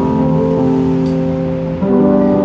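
Soft live worship-band music: a held keyboard chord with guitar, moving to a new chord near the end.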